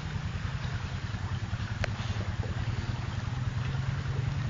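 ATV engine running steadily, with one short click near the middle.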